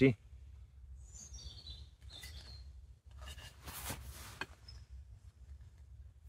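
Quiet outdoor ambience with a low steady rumble; a small bird gives a short call of descending high notes about a second in, with a fainter chirp just after. Near the middle comes a soft rustle of about a second, as the hatchet is turned in hand.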